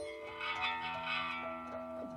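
Live guitar, bass and drums music opening a piece: a guitar chord struck right at the start rings out and sustains over held lower notes.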